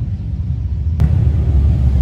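Motorcycle engines rumbling as bikes pass on the street, growing louder after a sharp click about a second in.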